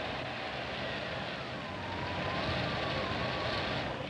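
Car running, a steady rush of engine and road noise with a faint high whine that slides down in pitch and levels off midway; it cuts off suddenly at the end.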